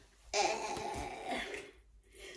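A woman clearing her throat once, a rough, breathy sound lasting over a second.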